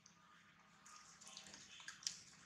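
Near silence: a faint steady hiss of outdoor ambience, with a few soft crackles in the second half.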